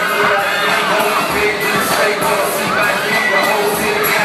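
Audience cheering and shouting over loud hip hop dance-remix music.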